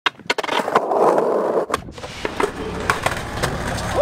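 Skateboard: several sharp clacks of the board, then the wheels rolling over concrete with a steady rumble from just under two seconds in, with more clicks along the way.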